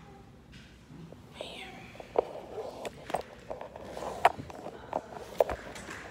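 A few sharp, irregular knocks and clicks, roughly a second apart, over faint background voices.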